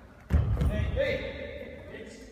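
Bare feet of karate students thudding down on a wooden gym floor as they step out of a kick, followed at once by a shout (kiai) from the students that rings and dies away in the hall.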